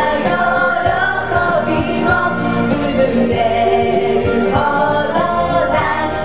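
Young women singing karaoke together into microphones over a loud backing track, several voices at once.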